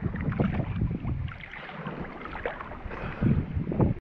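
Choppy lake water lapping and splashing around a camera at the water's surface, with wind buffeting the microphone; the low sloshing swells up near the start and again near the end.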